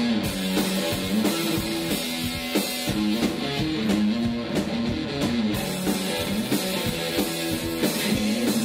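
Live rock music played through a stage PA and heard from the crowd: an electric guitar plays a repeating riff over a Ludwig drum kit beating a steady rhythm.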